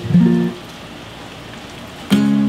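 Yamaha acoustic guitar strummed once, the chord ringing briefly before it is cut off about half a second in. Steady rain follows.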